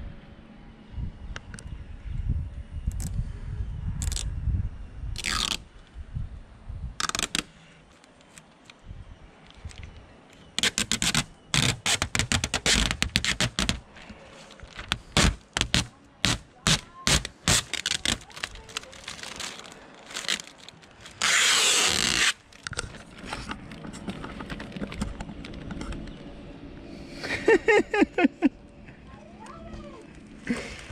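Protective plastic film being peeled off a new clear acrylic sailboat hatch lens: a quick run of sharp crackles and snaps, then one longer tearing rip a little past two-thirds of the way through.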